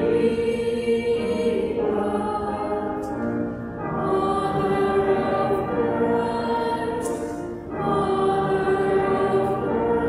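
A choir sings a slow hymn in long held notes, in phrases broken by short breaths about four seconds apart.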